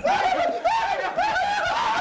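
A man laughing: a string of short laughs, each rising and falling in pitch.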